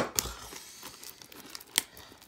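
A sealed trading-card hobby box being worked open by hand: faint crinkling and tearing of its wrapping, with a sharp click at the start and another near the end.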